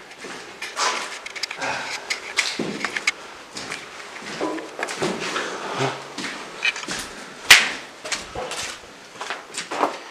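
Footsteps crunching and scuffing over rubble and flaking plaster on a cellar floor, with scattered irregular knocks and one sharp, loud knock about seven and a half seconds in.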